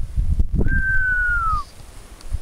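One clear whistled note, about a second long, gliding slowly down in pitch, over a low rumble of wind on the microphone that stops midway.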